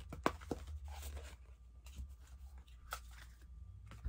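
Oversized tarot cards being handled and shuffled by hand: scattered soft snaps and short rustles of card stock at an irregular pace.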